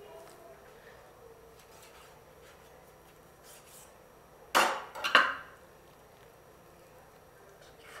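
Two sharp knocks on a wooden chopping board, about half a second apart, a little past halfway through, with only faint clicks of handling otherwise.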